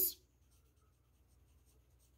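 Pencil writing on a paper book page: faint, short scratching strokes as a word is written by hand.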